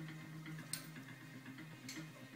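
Background television sound: low held musical notes that shift in pitch, with two sharp clicks, one about a second in and one near the end.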